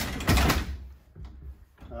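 Closet door being pushed open: a short, noisy scrape and rattle with a low rumble in the first half second, then quieter handling sounds.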